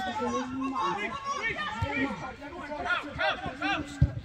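Several voices chattering over one another, with no clear words.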